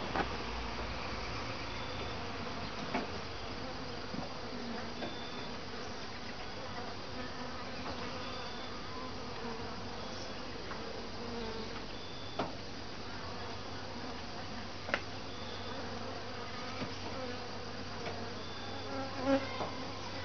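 Honeybees buzzing steadily around an open top-bar hive. A few sharp wooden knocks as the top bars are pushed back into place.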